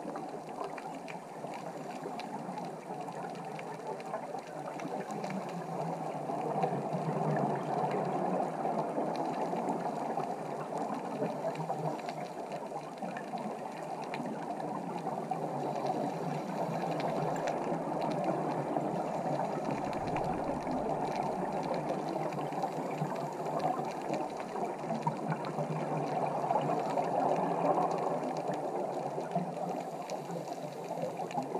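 Muffled underwater sound picked up through a camera's housing on a scuba dive: a steady rush of water and bubbles, swelling a little now and then.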